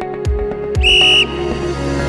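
One short, steady blast of a sports whistle about a second in, marking the start of a timed exercise interval. Under it runs background music with a steady beat of about two low thumps a second.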